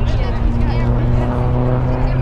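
A steady engine hum holding one pitch, under scattered shouting voices of players and spectators.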